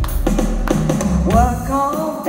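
Live band music with a drum kit keeping a steady beat over bass. A woman's singing voice comes in over it partway through.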